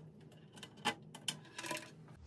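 A few faint clicks and small metal handling sounds as an ESD wrist strap's cord is clipped onto the metal chassis of an opened mixer, the sharpest click a little under a second in.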